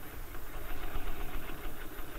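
Sewing machine running steadily while topstitching along a seam.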